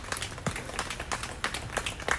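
Light, scattered applause from a small audience: separate hand claps at an irregular pace at the end of a song.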